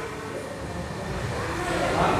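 Low, steady background rumble with no clear pitch.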